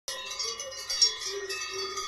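Several cowbells on grazing cows ringing together in overlapping tones, with one louder clank about a second in.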